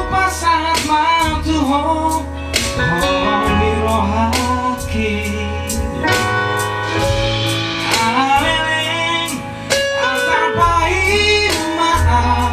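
Live band playing a slow Batak pop love song: lead vocal over acoustic guitar, electric keyboard, bass guitar and drum kit, with a steady beat.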